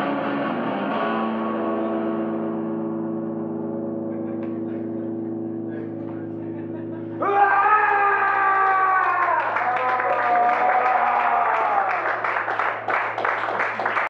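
An electric guitar chord left ringing through effects pedals, slowly fading; about seven seconds in, a loud shouted vocal comes in over it through the PA.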